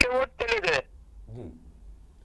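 A man speaking over a phone line, breaking off under a second in, followed by a pause with only faint line noise.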